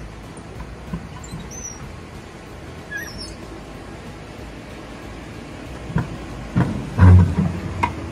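Mountain coaster sled rolling along its metal rail track, with a couple of brief high squeaks in the first half. Near the end it comes into the station with a series of thumps and knocks, the loudest about seven seconds in.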